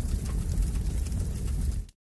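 A transition sound effect: a low rushing noise, heaviest in the bass, that holds steady and cuts off sharply just before the end.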